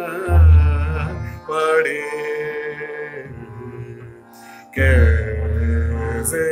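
A man singing a slow (vilambit) Hindustani classical khayal in raga Bihag, holding long notes that bend and glide between pitches. Two deep low booms come in, one just after the start and one near the end.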